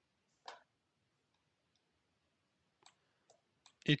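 Mostly quiet, with one soft click about half a second in and a few faint ticks later on: a computer mouse being clicked while working in the software.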